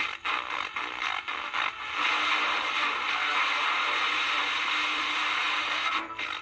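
A small portable FM radio's speaker hissing with static: scratchy crackles for the first two seconds, then a steady, even hiss. The hiss is the receiver not yet locked onto the home-made transmitter's signal while the transmitter is tuned.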